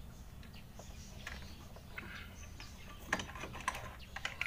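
Light metallic clicking from a motorcycle's small four-stroke engine being turned over by hand with a 14 mm wrench on the magneto nut, with a short run of sharper clicks a little after three seconds in.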